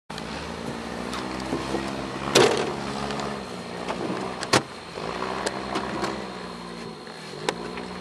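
Engine of an off-road 4x4 running at low revs while crawling up a rough trail, its pitch and level rising and falling with the throttle. Two sharp knocks stand out, about two and a half and four and a half seconds in, among a few lighter clicks.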